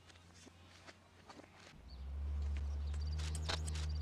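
Soft footsteps on a floor, then a deep, steady low hum comes in about two seconds in and becomes the loudest sound.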